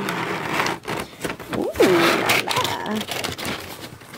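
Cardboard shipping box being opened by hand: the board and its flaps scraping and rustling, with small knocks as it is handled.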